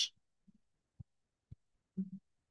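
Three faint, short low thuds about half a second apart, between stretches of near silence.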